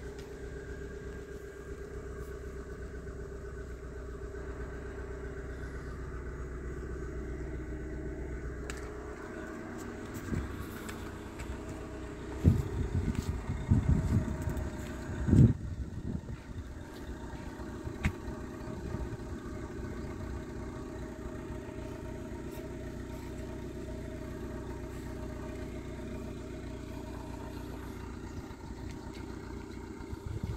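Mazda Demio's 1.3-litre four-cylinder engine idling steadily. A few loud, short bumps come about twelve to sixteen seconds in, with a sharp click shortly after.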